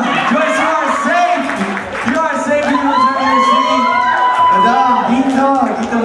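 Wedding guests cheering and whooping over overlapping talk and laughter, with a long sliding high whoop about halfway through.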